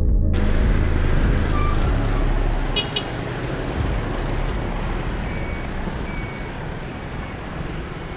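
Street traffic noise, a steady rumble of passing vehicles. There is a brief high-pitched sound about three seconds in, and faint short chirps repeat a bit under once a second in the second half.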